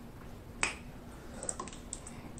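Close-miked mouth sounds of chewing: one sharp wet click or lip smack about half a second in, then a quick run of smaller clicks near the end as a glass mug is picked up.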